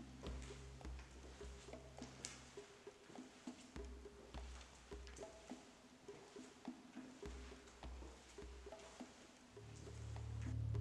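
Quiet, sparse film score: short soft pitched notes over low bass pulses that come and go.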